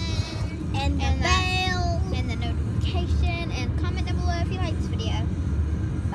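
A child's high voice chattering without clear words, with one drawn-out note about a second in, over the steady low rumble of a moving car heard from inside the cabin.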